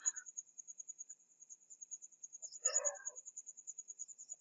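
A faint, high-pitched trill of rapid, even pulses runs steadily in the background. A short, soft sound comes near three seconds in.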